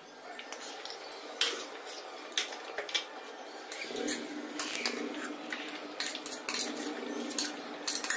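A steel spoon tapping and scraping against an earthenware cooking pot as ghee is spooned into it: a string of light, irregular clicks. A faint steady hum comes in about halfway through.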